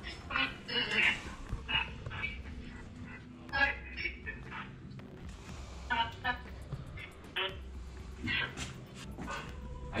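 A dog barking faintly in short, scattered bursts over a low steady hum.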